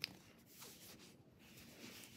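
Near silence, with faint rustling of fabric being handled and a brief click right at the start.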